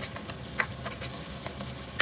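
Spatula stirring broccoli and scallops in a stainless steel wok: faint, scattered light taps and scrapes.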